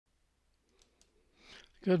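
A near-silent start with two faint clicks a little under a second in, then a short breath in, and a man's voice begins a word right at the end.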